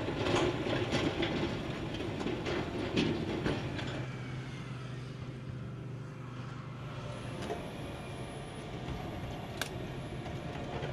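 Tracked armored vehicle on the move: its tracks and steel parts clank and rattle over a steady engine hum. The clatter is busiest in the first few seconds, then eases to a quieter running sound, with one sharp click near the end.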